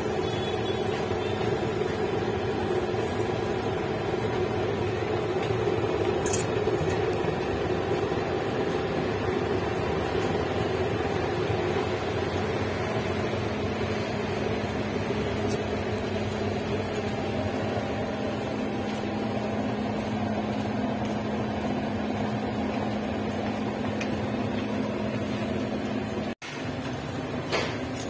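A steady mechanical hum with a constant low tone, like a fan or small motor running.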